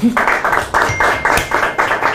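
A fast, even percussive beat of about five dull strokes a second, starting just after a short laugh and running on without a break.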